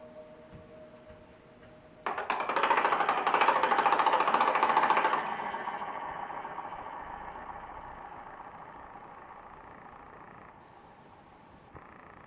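Experimental electro-acoustic music: a fading steady tone, then about two seconds in a sudden loud, rapid rattling buzz that lasts about three seconds and then dies away slowly.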